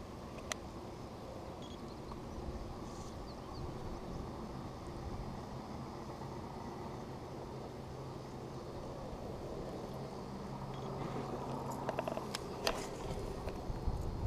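Steady wash of wind and water noise with a faint low hum aboard a small fishing boat. A few sharp clicks come near the end as the fishing rod and reel are worked for a cast.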